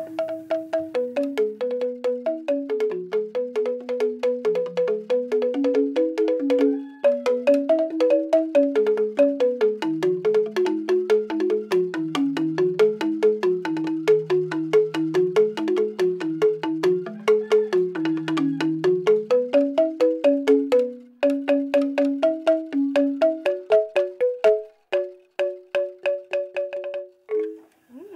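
Balinese bamboo xylophone (joget bumbung) played with two mallets: a quick, even run of ringing struck notes in two interlocking parts, a low moving melody under a higher one, stopping just before the end.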